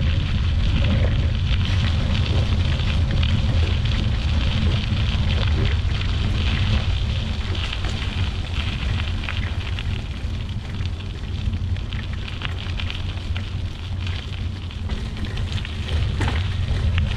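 Bicycle rolling along a leaf-strewn gravel path: a steady low rumble of wind and tyre noise on the handlebar camera's microphone, with continual fine crackling from the tyres over leaves and grit.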